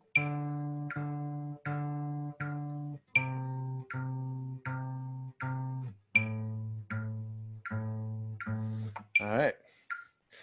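Steel-string acoustic guitar playing a slow descending pentatonic exercise. Each single note is picked four times, about three-quarters of a second apart, before it steps down to the next lower note. There are three lower steps. A brief voice sound comes near the end.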